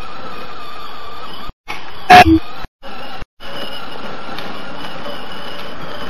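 Battery-powered toy ride-on motorcycle running steadily, its small electric motor whirring and its plastic wheels rolling over stone paving. A short, loud sound about two seconds in, and the audio cuts out briefly three times.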